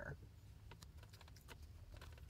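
Near silence with faint, scattered light clicks and taps: a takeout food container being handled and uncovered.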